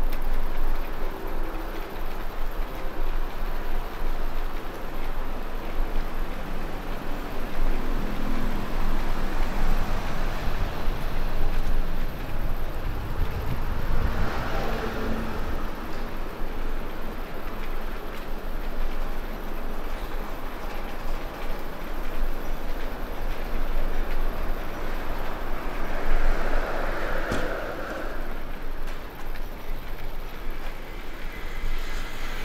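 Steady city street background noise, a low rumble with a hiss over it, swelling twice, about halfway through and again near the end.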